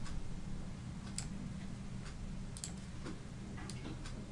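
A few sharp computer mouse clicks, one about a second in, a quick pair in the middle and one more near the end, over a steady low electrical hum.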